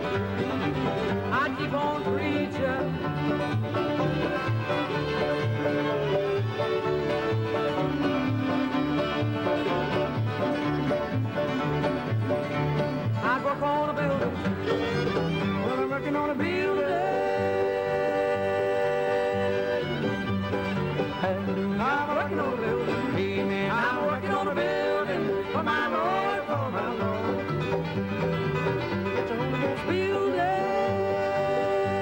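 Bluegrass band playing an instrumental break, with the fiddle leading in bowed lines and sliding notes over five-string banjo, guitar and bass fiddle.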